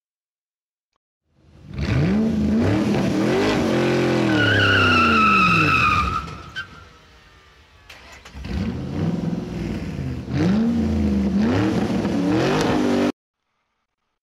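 Car engine revving up and down, with tires squealing for about two seconds partway through. The engine falls away, then revs again several times and cuts off suddenly about a second before the end.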